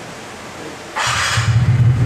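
TVS Ntorq 125 Race XP scooter started on its electric starter: about a second in there is a brief starter whirr, the single-cylinder engine catches at once and settles into a steady idle.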